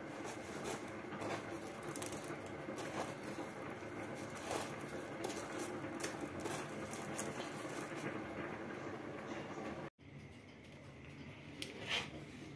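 Chicken pieces being pressed and rolled in a pile of crushed dry flakes on a plastic tray to coat them: a continuous soft crackling and rustling with many small crunchy clicks. It breaks off suddenly near the end, and what follows is much quieter.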